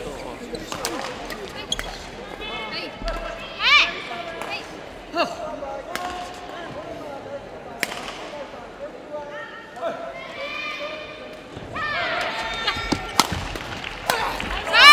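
Badminton rally on an indoor court: rackets strike the shuttlecock in sharp, irregular clicks every second or two, and shoes give short, high squeals on the court floor, several of them near 4 s and again late on.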